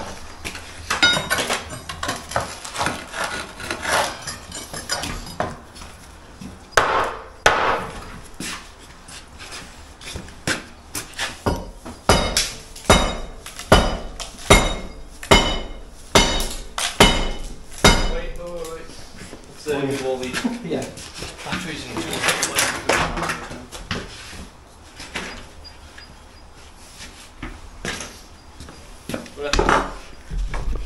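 Metal demolition tools (crowbar, hammer, hatchet) striking and prying at an old timber door frame to knock it out. Irregular knocks, then a run of heavy blows about one a second with a metallic ring, from about 12 to 18 seconds in.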